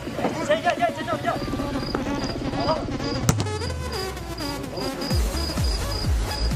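A cricket chirping at an even pace, about two to three short high chirps a second, starting about a second in, over music and voices. There is one sharp knock about three seconds in, and a low beat comes in near the end.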